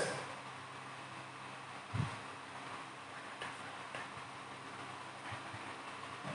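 Quiet room tone: a faint steady hum with a few soft clicks, the most distinct one about two seconds in.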